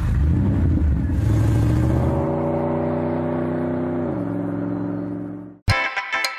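A car engine revving under acceleration, its pitch climbing, then dropping sharply about four seconds in and holding lower. It cuts off suddenly near the end, and music with plucked notes starts.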